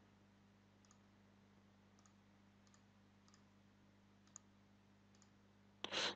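Near silence with about six faint computer mouse clicks spread through.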